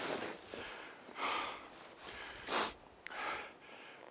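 Skis hissing and scraping over snow in four short, uneven bursts during the turns of a downhill run.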